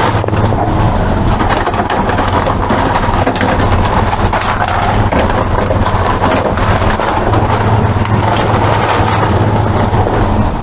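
A steady low machine hum runs under the crinkle and rustle of plastic seed packets and cardboard boxes being handled.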